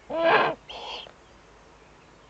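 Eurasian eagle-owl calls: two short calls in quick succession. The first is louder and has a bending pitch. The second is fainter and higher.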